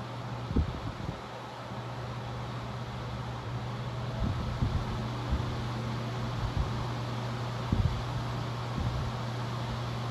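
Old Sears high-velocity fan with aluminum blades and a shaded-pole motor running, giving a steady low hum and rush of air. Its airflow buffets the microphone in irregular low thumps.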